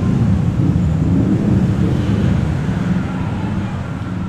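Steady low rumbling background noise, easing slightly near the end.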